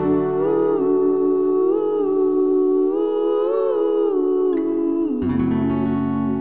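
Voices in harmony humming long, wordless held notes over softly ringing acoustic guitar, the notes stepping up and down together. About five seconds in, they settle onto a lower, fuller chord.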